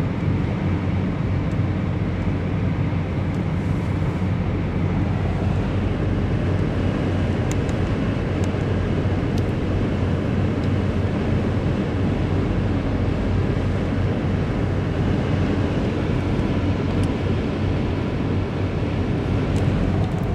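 Steady road and tyre noise inside a car's cabin at highway speed.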